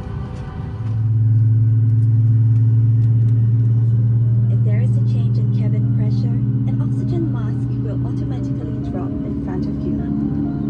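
Steady low hum of a Boeing 737 MAX 8 airliner taxiing, heard from inside the cabin. It comes in strongly about a second in and holds even to the end.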